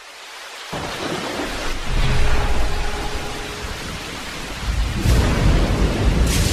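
Thunderstorm: steady rain hiss swells in, and rolling thunder rumbles about two seconds in and again, louder, from about five seconds in.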